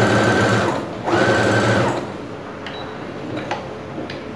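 Electric home sewing machine stitching a hem in two short runs of under a second each, with a brief pause between them. It stops about halfway through, and a few faint clicks follow.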